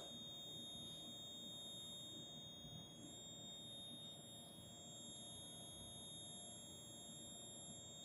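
Near silence: room tone with a faint, steady high-pitched electronic whine.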